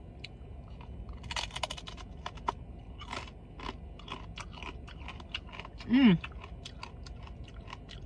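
Close-up crunching and chewing of a crispy taco: a run of sharp, crackly crunches from the fried shell as it is bitten and chewed, then a hummed 'mmm' about six seconds in.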